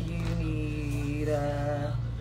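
A voice singing long held notes, the pitch stepping higher a little past the middle, over a steady low hum.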